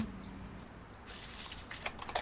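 Clear plastic RO/DI filter housings being handled: a sharp click at the very start, then a brief hissing swish about a second in and a few small plastic clicks near the end, as the housing and its wrench are worked.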